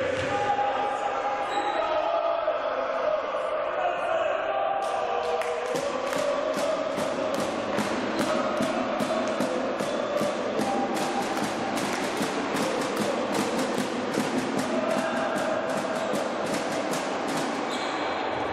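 Spectators in a sports hall chanting. From about five seconds in until near the end they clap in rhythm, about three claps a second, with the hall's echo.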